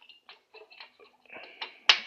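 Light clicks and rattles of a scooter's spark plug cap and HT lead being handled at the cylinder head, with one sharper click near the end.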